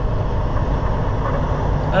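Semi truck's diesel engine running steadily in the cab as the truck rolls slowly through a parking lot, a steady low rumble.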